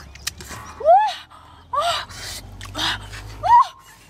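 A woman gasping and giving short wordless cries of surprise: breathy intakes of breath and three brief rising-and-falling "oh" sounds.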